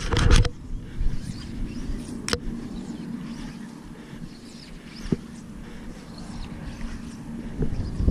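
Wind rumbling low and steady on the camera microphone, with a brief rush of noise at the very start and two faint knocks, one a couple of seconds in and one about five seconds in.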